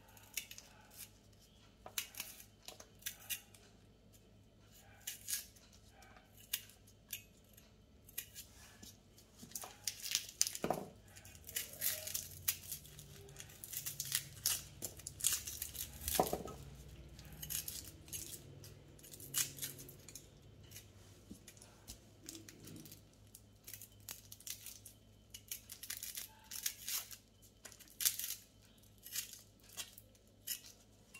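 Dry, papery shallot skins crackling and tearing as they are peeled and scraped off with a cleaver: a run of short, irregular crisp snaps, with a couple of duller knocks around the middle.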